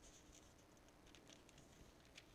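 Near silence with faint, scattered soft rustles of thin Bible pages being handled and turned.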